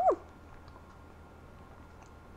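A woman's short hummed "mm" of approval while tasting, rising and then falling in pitch. Quiet room tone follows, with a few faint ticks.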